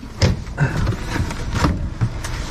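A cardboard box with a styrofoam insert being handled and slid along: a run of short scrapes and knocks.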